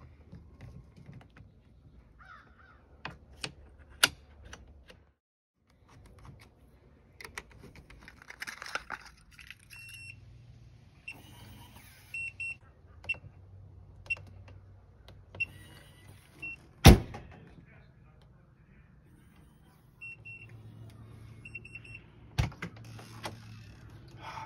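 Keyless RV door lock being fitted and tried: scattered sharp clicks as the lock parts are fitted, then groups of short, high electronic beeps from the lock's keypad as its buttons are pressed, with keys jangling on a fob. One loud sharp knock about two-thirds of the way through.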